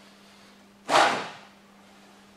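A single fast swish of a wooden practice sword (bokken) swung through the air about a second in, starting sharply and fading within half a second.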